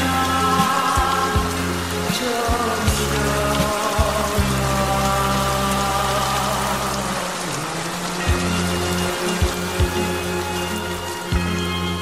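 Instrumental music of a Korean folk-pop song with held notes and a steady bass line, mixed with the sound of steady rain falling.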